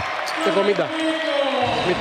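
A basketball being dribbled on a hardwood court, under a man's play-by-play commentary.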